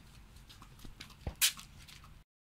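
A few faint clicks, then one loud, sharp snap about a second and a half in, as wires leading into a pan of thermite are plugged into a mains outlet.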